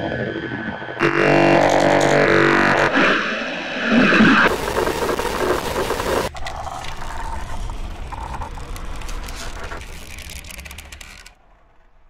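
Eerie horror-trailer sound design: a droning, layered tone that sweeps up and down in pitch in repeated arcs, then a short burst of hiss, then a low rumble that fades away to near silence shortly before the end.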